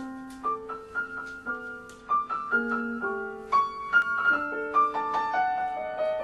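Acoustic piano playing a tango, a melody of struck notes over chords, each note sounding sharply and then fading.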